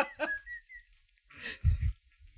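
A man's high-pitched, hiccupping laughter trailing off into thin squeaky gasps in the first half-second. A short breathy sound follows near the end.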